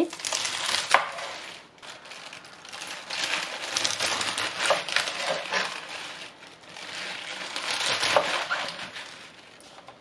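Chef's knife slicing through a bunch of fresh spinach stems and leaves on a plastic cutting board, cutting them into short lengths. A dense, crisp crackle of cutting comes in three swells, with a sharp knock of the blade about a second in.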